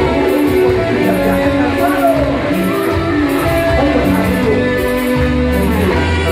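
Live cachaca (Argentine cumbia) band playing an instrumental passage: electric guitar and saxophones over bass and an even percussion beat.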